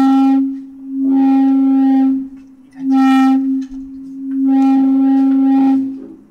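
Public-address microphone feedback: a loud howl held at one steady pitch, swelling and dying back about four times.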